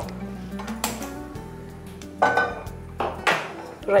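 Metal utensils and cookware clinking and clattering on a stovetop pan: a sharp knock about a second in, then two louder clatters near the middle and toward the end, over soft background music.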